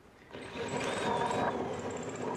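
Random orbit sander starting about a third of a second in and running steadily, sanding an ash leg.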